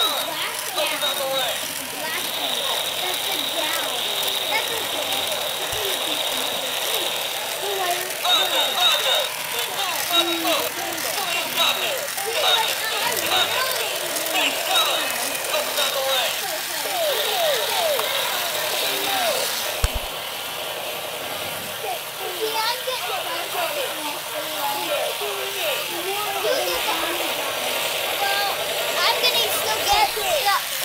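Battery-powered talking toy figures playing their recorded voice clips and sound effects through small built-in speakers, in a steady run of speech-like calls. There is a steady high tone in the first few seconds, a buzzing effect near the end and a single sharp click about two-thirds of the way through.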